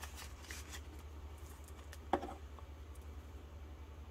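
Prop paper bills rustling and a clear plastic binder pocket crinkling as the cash is slid in and handled, with one brief knock about two seconds in. A low steady hum runs underneath.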